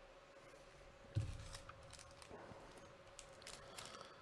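Faint handling of trading cards and a foil card pack: a soft knock about a second in, then light clicks and crinkles, over a steady faint hum.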